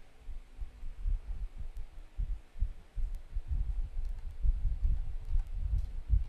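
Typing on a computer keyboard, heard mostly as irregular low thuds carried through the desk, several a second, with a few faint key clicks.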